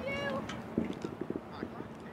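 Passersby's voices, with a short, high-pitched held call near the start.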